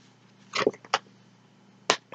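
Tarot cards being handled as one is drawn from the deck: a short rustle about halfway in, a light tick, then a sharp snap of card near the end.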